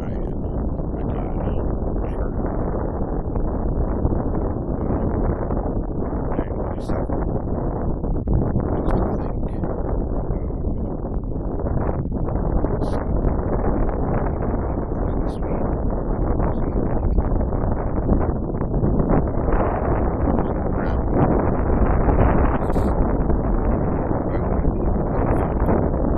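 Wind buffeting the phone's microphone: a loud, steady rush that grows a little louder in the second half.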